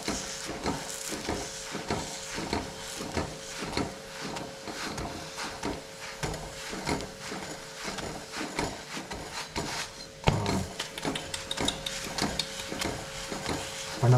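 Wooden chapati press rubbing and pressing a chapati against an iron tawa, a run of short scuffing strokes about two or three a second.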